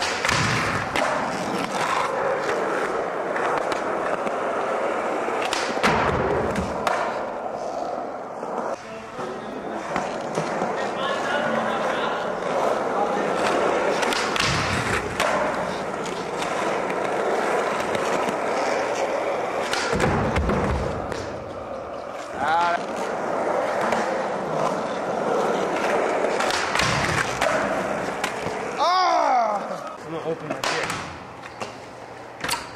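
Skateboard wheels rolling on a smooth concrete floor through a skater's line of tricks, starting with a fakie flip into a tail slide on a wooden ledge. Heavy board landings thud out several times along the way, about every five to seven seconds.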